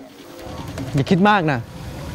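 Mostly speech: one short spoken phrase about a second in, over a faint background hiss.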